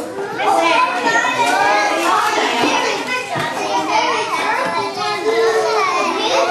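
Many young children talking and calling out over one another, a dense, continuous babble of high voices.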